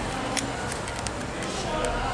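Faint, indistinct speech in the background, with a few soft clicks.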